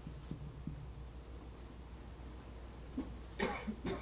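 Faint taps and squeaks of a marker writing on a whiteboard, then a short cough about three and a half seconds in, with a smaller one just before the end.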